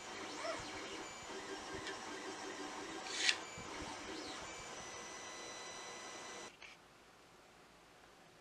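A plastic stylus being handled in its 3D-printed holder, with faint rubbing and one sharp plastic click about three seconds in, over faint steady high tones. The sound drops away suddenly about two-thirds of the way through.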